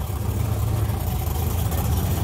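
Steady low engine rumble, as race cars idle at the drag strip.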